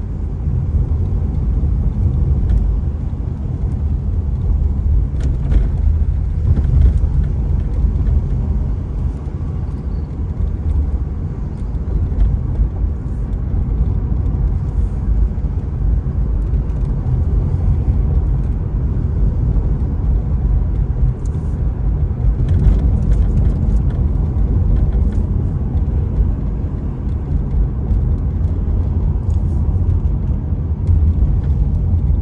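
Steady low rumble of a car driving, its engine and tyre noise heard from inside the cabin, with a few faint clicks.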